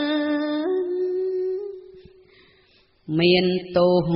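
Khmer smot, Buddhist verse chanted in song by a woman: she holds one long note with slight wavering and lets it fade away about halfway through. After a short silence a new phrase begins near the end, lower in pitch.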